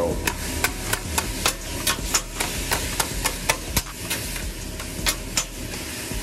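Two metal spatulas chopping sliced ribeye steak, onions and peppers on a flat-top griddle, the blades knocking sharply against the steel plate about three times a second.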